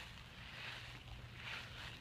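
Faint, steady low rumble of wind on the microphone, with quiet outdoor background noise.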